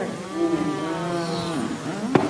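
A person's voice holding one long, low hum on a near-steady pitch for about a second and a half.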